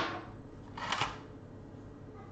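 Two short scraping rustles from makeup tools being handled, one right at the start and a softer one about a second in.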